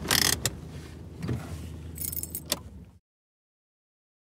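Low rumbling background ambience with a few short rattling, clattering noises and clicks, cutting off suddenly to total silence about three seconds in.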